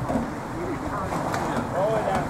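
Nissan Xterra's engine running at low revs as it crawls over a stump and rocks, with faint voices underneath.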